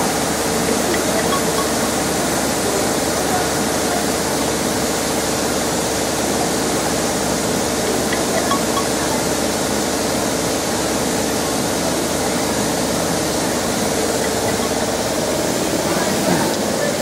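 Steady rushing machine noise with a constant hum underneath, from factory machinery around a fiber laser cutting machine. It holds unchanged throughout.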